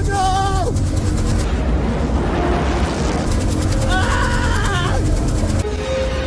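Small-block Ford V8 truck engine held at high revs, heard from inside the cab, with voices over it; near the end it gives way to music.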